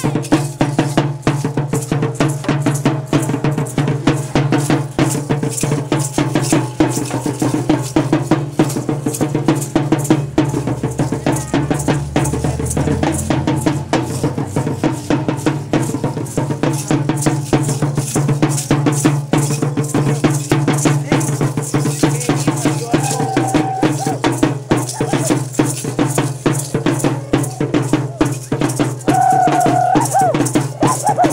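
Parachico dance music: a stick-beaten drum and the dancers' chinchín rattles played in a quick, steady rhythm that does not let up, with a steady low hum underneath.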